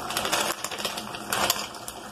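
Dry penne pasta pouring from a plastic packet into an aluminium pot: a rapid, uneven run of small hard clicks as the pieces land on one another and on the metal.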